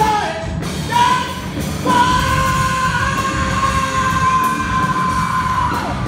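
Live rock band of electric guitars, bass guitar and drum kit playing, with the singer yelling a short high note about a second in and then one long, high held note that lasts until near the end.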